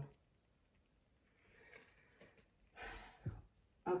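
A quiet pause with a few faint clicks, then a woman's audible breath, a short sigh-like intake, about three seconds in.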